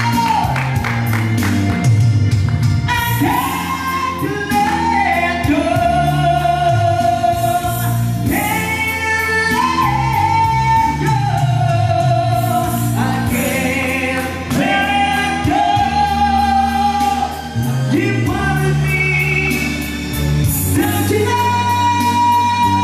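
A man singing a rock ballad into a microphone over backing music, holding long high notes one after another over a steady bass line.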